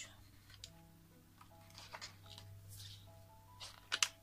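Faint background music with a soft, stepping melody over a steady low drone from a lawn mower running outside. Near the end a sheet of card stock rustles sharply as it is lifted and turned; this is the loudest sound.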